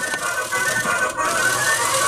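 A toy claw machine's electronic tune playing in steady held notes while the claw is worked from its control buttons.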